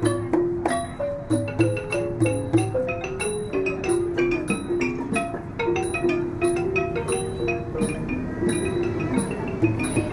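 Traditional Thai ensemble music led by a ranat, a Thai xylophone, playing a quick, steady melody of struck ringing notes. Low beats sound under it during the first few seconds.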